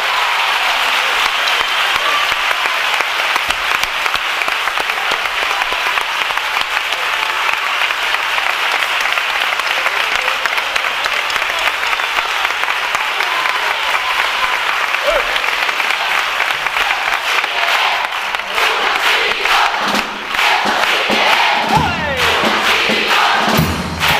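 Theatre audience applauding steadily once a song has ended, with shouts and cheers from the crowd joining in over the last few seconds.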